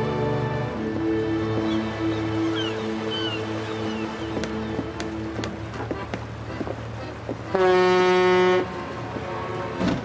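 Soft sustained background music, with a boat's horn sounding once, loud and steady, for about a second near the end.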